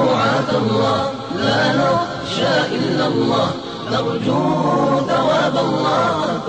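Arabic nasheed: a group of voices singing a slow, chant-like religious melody with held, gliding notes.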